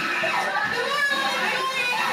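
Young women's voices talking over background music, coming from a video playing on a television.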